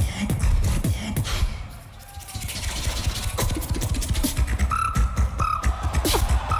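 Competition solo beatboxing: dense bass kicks and sharp clicks, easing off briefly about two seconds in, then short held high-pitched tones over the beat near the end.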